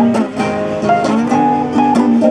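Instrumental bars of a song: an acoustic guitar strummed over held keyboard chords, the chords changing every half second or so.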